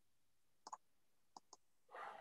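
Near silence broken by a few faint, brief clicks, a pair a little under a second in and two more about half a second later.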